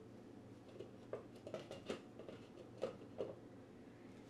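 Quiet kitchen: a low steady hum with about half a dozen faint, irregular light ticks and taps.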